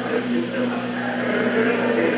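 Steady low hum with hiss from an old speech recording, heard during a pause between spoken sentences.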